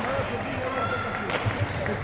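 Indistinct voices talking in a sports hall, with a sharp knock about a second and a half in.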